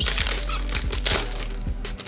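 Clear plastic sleeve crinkling and rustling as a stack of large glossy photo prints is handled and slid out of it, busiest in the first second.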